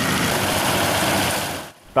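Engine-driven paddy threshing machine running steadily while rice stalks are fed in, its small engine beating rapidly under the rushing noise of the threshing drum and the grain and straw thrown out. The sound stops shortly before the end.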